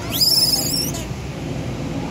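Infant silvered langur giving one high, shrill call that sweeps quickly upward and holds for under a second before stopping: an orphaned baby's distress cry for its mother. A steady low rumble runs underneath.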